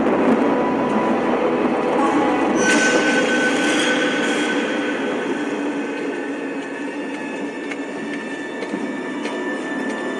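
Eerie horror-score drone: a dense, screeching wash with several held tones, a high tone joining about two and a half seconds in, the whole easing down over the second half.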